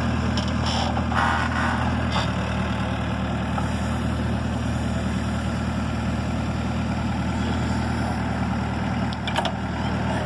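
Backhoe loader's diesel engine running steadily while it works the digging arm, with a brief scraping noise about a second in as the bucket digs into the soil.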